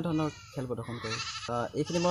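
A young man talking in short phrases with brief pauses.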